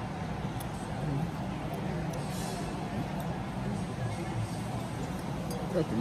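Dining-room ambience in a large hall: a steady low hum under a faint murmur of distant voices, with a few faint clicks. A close voice starts just before the end.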